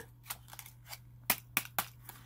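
Clear plastic blister packaging crackling and clicking as it is handled: a handful of short sharp clicks, the loudest in the second half.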